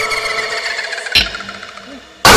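An eerie pulsing tone, slowly falling in pitch and fading out, with one sharp hit a little over a second in.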